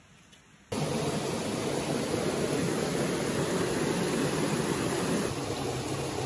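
Steady flowing of a shallow, rocky stream, starting abruptly under a second in after near silence.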